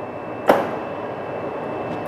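A Focus Atlas 1311 UV flatbed printer's table positioning pins being switched from the front-panel button: a single sharp click about half a second in, over the machine's steady hum with a faint high whine.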